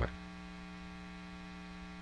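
Faint steady electrical hum, constant in pitch and level.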